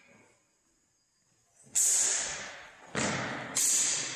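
Steel longsword blades clashing three times during sparring, each strike ringing briefly before it fades. The first strike comes after nearly two seconds of quiet, and the second and third follow close together.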